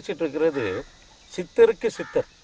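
A person speaking in short phrases, with a faint steady high chirring of insects underneath that shows through the pause in the middle.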